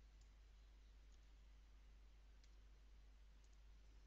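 Near silence: room tone with about five faint, sparse clicks of computer keys and mouse buttons as a command is typed and a program opened.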